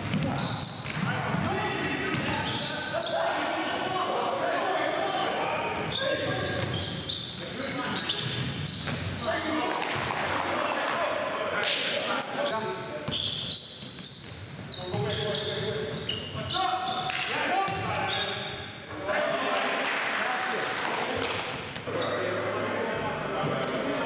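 A basketball dribbling and bouncing on a hardwood gym floor, with players' indistinct shouts, echoing in a large gymnasium.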